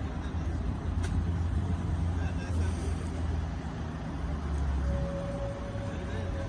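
Road traffic with a vehicle engine running nearby: a low, steady rumble, with a steady whining tone coming in near the end.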